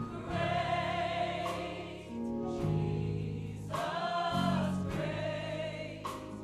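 Gospel choir of men's and women's voices singing in long held phrases, with low held notes sounding beneath.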